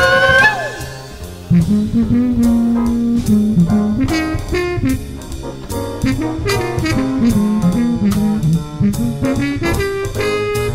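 Studio jazz band with horns, piano, bass and drum kit playing. Rising sliding notes end about half a second in. After a short drop in level, the band comes back in about a second and a half in, with a low horn melody over drums and cymbals.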